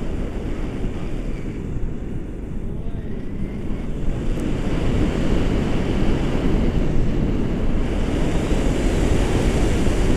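Wind buffeting the camera microphone in flight under a tandem paraglider, a steady low rush that eases a little about two seconds in and grows stronger from about four seconds on.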